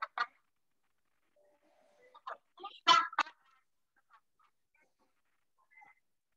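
A few short, broken bursts of a person's voice, the loudest about three seconds in, with quiet gaps between.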